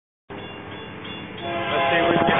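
An approaching train's locomotive horn sounding a steady chord, growing louder about a second and a half in.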